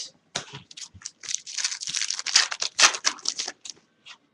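Baseball trading cards handled and shuffled by hand: a rapid run of clicks and papery rustles, densest through the middle seconds.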